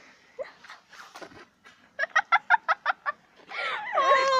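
A girl's quick burst of laughter, about seven short high notes in under a second, about halfway through. Near the end a louder, pitch-sliding vocal squeal follows.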